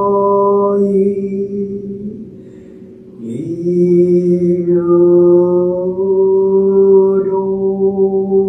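A male Jodo Shinshu Buddhist priest chanting solo in long, drawn-out held notes. He pauses briefly for breath about two seconds in, then resumes.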